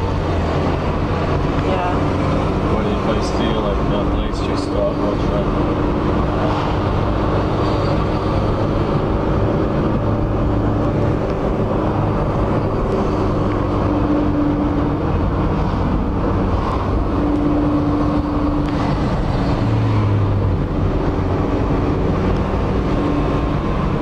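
Car engine and tyre noise heard from inside the cabin while driving, a steady low drone.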